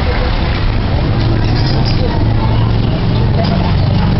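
Busy street noise: a vehicle engine running with a steady low hum, over the chatter of people around.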